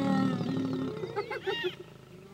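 Several spotted hyenas calling at once: a long, low held call with gliding overtones, then a burst of short high-pitched squeals about a second in. These are the lows, groans and squeals that hyenas give when approaching a lion together as a group.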